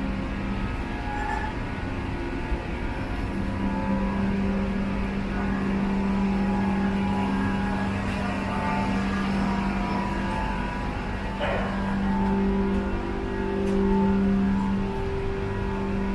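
Steady hum inside a Doha Metro train carriage: a low drone with higher tones that come and go, swelling slightly near the end.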